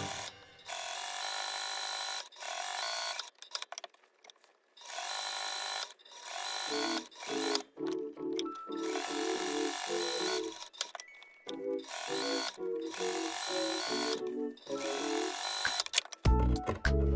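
Domestic electric sewing machine stitching a seam through cotton fabric, running in several bursts with short stops between them as the fabric is guided along.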